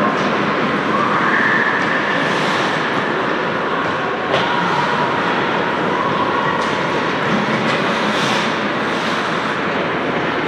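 Steady rushing noise of an indoor ice hockey rink, with skate blades on ice and the hall's own hum. A single sharp knock comes about four seconds in.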